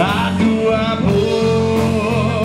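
A band playing a pop-rock song: a sung melody over instruments, with a steady drum beat.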